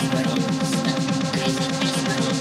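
Electronic dance music from a live DJ set, driven by a fast, evenly repeating synth bass figure with sustained synth tones above it.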